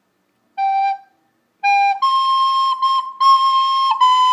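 Soprano recorder played slowly: a short G (sol) sounded twice, then a higher C (do) tongued three times in a row, the opening of a hymn phrase demonstrated note by note.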